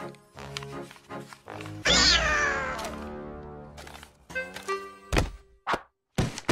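Cartoon soundtrack: light plucked music notes, then about two seconds in a loud cry that falls in pitch over about a second, then two sharp thuds near the end.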